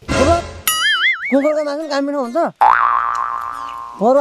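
Cartoon-style comedy sound effects: a noisy swish with a falling glide, then a high wobbling boing-like tone, a short spoken line, and near the end a tone that springs up in pitch, then holds and fades away.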